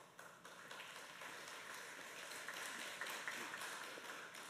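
Faint applause from a small audience, building over the first second and starting to die away near the end.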